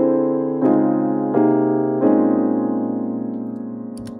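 A sampled piano loop playing back: chords struck in quick succession over the first two seconds, the last one held and slowly fading out.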